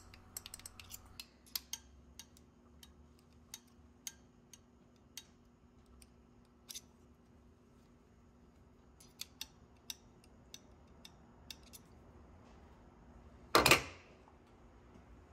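Small metal clicks and taps from handling an assembled steel compressor discharge valve and probing it with a steel pick. Near the end comes one much louder metal clunk as the valve is set down on a steel vise.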